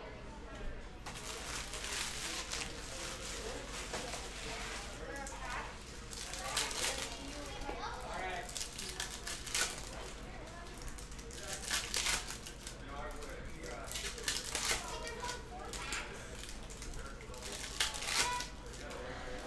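Foil trading-card pack wrappers crinkling and cards being handled and flicked through by hand: an irregular string of short crackles and rustles.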